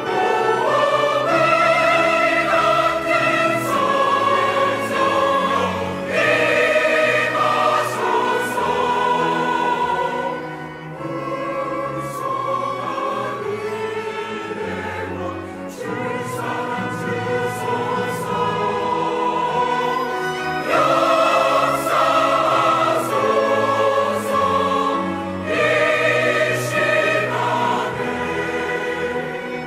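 Mixed-voice church choir singing a hymn anthem in Korean with chamber orchestra accompaniment, in long sustained phrases that ease off briefly about eleven and sixteen seconds in before swelling again.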